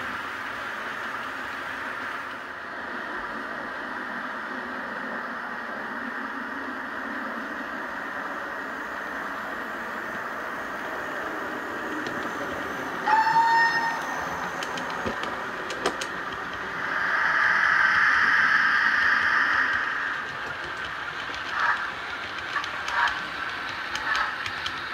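Steam locomotive sounds on a model railway layout: a steady hiss, then a short steam whistle blast about halfway through. A louder burst of steam hiss lasts a few seconds, and short repeated chuffs follow near the end as a locomotive comes into the platform.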